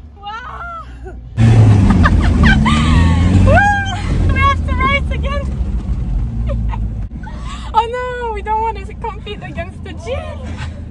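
People laughing and whooping inside a Land Rover Defender's cabin over a steady low vehicle rumble, which comes in suddenly about a second and a half in.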